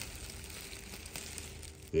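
Plastic parts bag crinkling as it is handled, a soft steady crackle.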